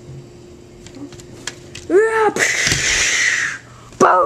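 A child voicing sound effects for toy weapons firing: a short rising-and-falling vocal call about two seconds in, then a loud hissing explosion noise made with the mouth, lasting about a second.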